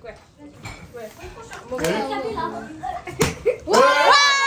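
Plastic water bottle tossed and landing with a sharp smack on a wooden floor about three seconds in. An excited voice rises into a high shout right after it, near the end, over murmured chatter.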